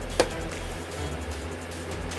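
One sharp click about a quarter second in, like a small object being set down, over a steady low hum.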